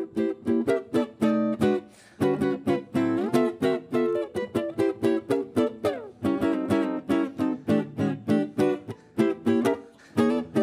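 Solo archtop jazz guitar playing a swinging chord-melody break, its chords plucked in a quick, steady run of several strokes a second. There are short breaks about two and six seconds in.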